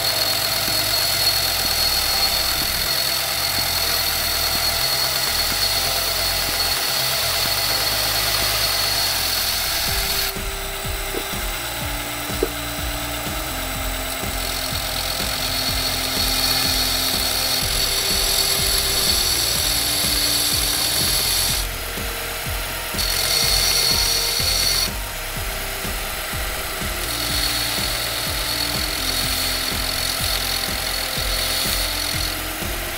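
Bader B3 belt grinder running a narrow contact wheel, its abrasive belt grinding notches into the steel spine of a sword blade: a steady high grinding hiss. The hiss drops back about ten seconds in and twice more past the two-thirds mark. Background music plays underneath.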